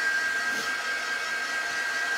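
Small handheld craft heat tool blowing hot air steadily, a rush of air with a steady high-pitched whine running through it.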